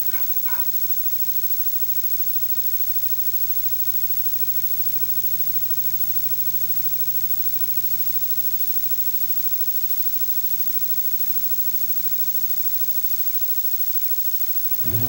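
Steady low electrical hum with faint hiss and no other sound: the blank stretch of an off-air videotape recording between programme segments.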